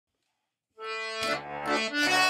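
Hohner single-row diatonic button accordion starting to play a Swedish schottis. After a short silence a held melody note comes in under a second in, and the bass and chord notes join about half a second later.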